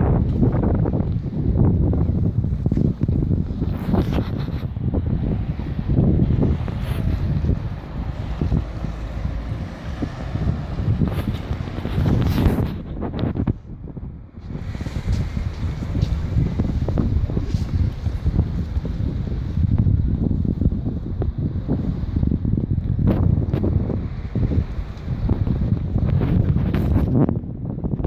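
Wind buffeting the microphone, a heavy, uneven low rumble that drops away briefly about halfway through.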